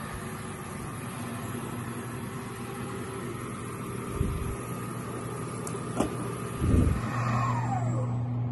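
Small CNC milling machine running its final pass cutting aluminium, a steady machine hum through the shop. A few short bumps come about four, six and seven seconds in, and a falling whine sweeps down near the end.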